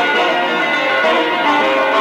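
Bağlama (long-necked Turkish saz) playing an instrumental passage of quick plucked notes with a bright, bell-like metallic ring.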